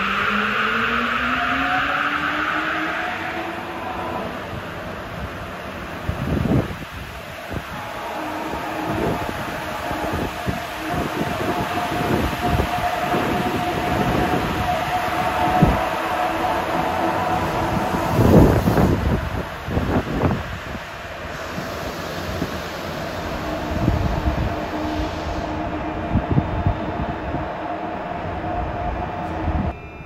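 Sapporo Tozai Line 8000-series rubber-tyred subway train pulling out of the station. Its inverter motor whine rises in pitch over the first few seconds as it accelerates, then runs on at a steady pitch under a stream of irregular thumps and rumbles as the cars roll past.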